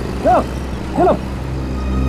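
Steady low rumble of a motor vehicle's engine running, with two short rising-and-falling calls about a third of a second and a second in.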